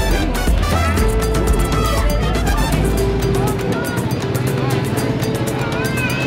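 Music with a steady beat and a bass line, held notes over it.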